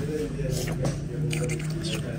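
A few short crackly rustles of fingers handling flaky baklava pastry on a plate, over low voices and a steady low hum.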